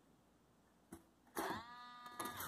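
Near silence with a faint tap about a second in, then a drawn-out hesitant "uh" from a voice that dips slightly in pitch and then holds.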